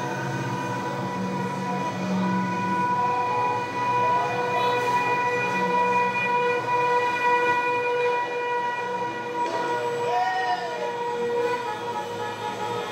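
Vehicle horns held down together in a steady, unbroken blare, with a few short rising-and-falling tones over it.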